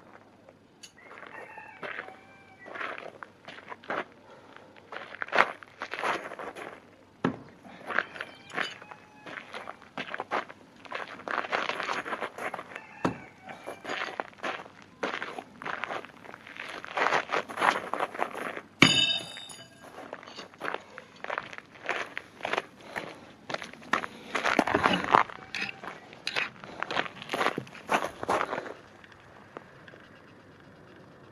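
Footsteps crunching irregularly on gravel, in several bouts. About two-thirds of the way through there is one sharp metallic clink that rings briefly.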